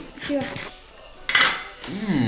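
Metal cutlery clinking against dishes a few times, the loudest clink about a second and a half in, as food is served up to taste.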